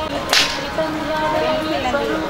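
One short, sharp swishing crack about a third of a second in, over the background voices of a crowd.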